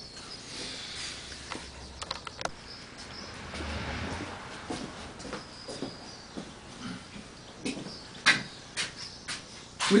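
Quiet workshop background hiss with scattered faint clicks and knocks of handling, a few about two seconds in and a small run of them near the end.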